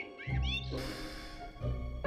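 Film background score with sustained tones, with a few short meow-like gliding squeaks at the start and a brief swish of noise about a second in.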